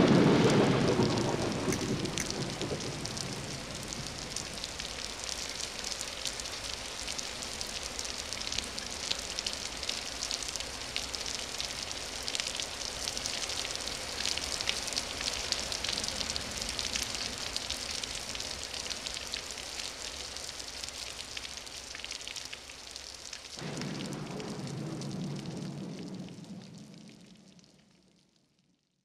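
Rain falling: a steady hiss full of small drop ticks, while the last chord of the music dies away in the first couple of seconds. Near the end a lower held sound joins the rain, then everything fades out.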